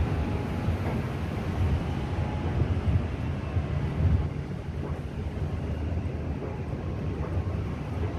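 Wind buffeting the microphone: a low, gusty rumble that swells for a few seconds in the first half, over a steady hiss of open-air background noise.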